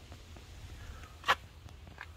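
Faint low background rumble with one sharp click a little past a second in.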